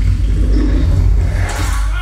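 A loud, steady low rumbling drone, with a fainter, higher sound joining about one and a half seconds in.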